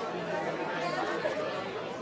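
Background chatter: several people talking at once, their voices overlapping, with no one voice standing out.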